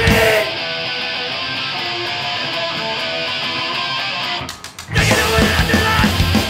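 Live hardcore punk band: the full band drops out about half a second in, leaving the electric guitar playing alone for about four seconds. Four quick sharp clicks follow, and the whole band crashes back in about five seconds in.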